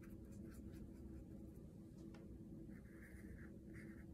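Faint sounds of a watercolor paintbrush being worked in a paint tray and stroked on paper: a few light ticks, then soft short scratchy brush strokes from about three seconds in, over quiet room tone.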